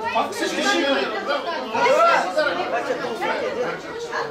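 Several people talking over one another: the steady chatter of a group at a table.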